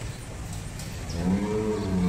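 Deshal bull lowing: a single drawn-out moo that starts a little after halfway through and is still going at the end, its pitch arching gently up and down.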